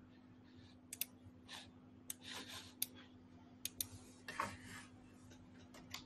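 Faint scattered sharp clicks and two short rustling sounds from handling things at a desk, over a steady low hum.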